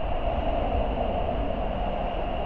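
Steady, low rumbling background noise with a constant hum and no clear events.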